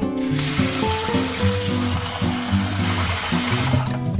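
Water running steadily into a plastic bowl of uncooked Japanese rice set in a colander, filling it for the first rinse; it starts just after the beginning and cuts off sharply shortly before the end. Acoustic guitar music plays underneath.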